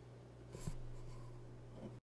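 Quiet room tone with a steady low hum, and a brief soft rustle or scuff about half a second in.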